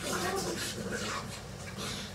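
Wordless vocal sounds and breathing from boys play-fighting, with no clear words.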